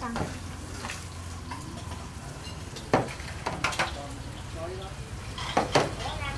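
Bánh khọt frying in oil with a steady sizzle. Sharp clinks of utensils on dishes come about three seconds in, twice a little later, and twice near the end.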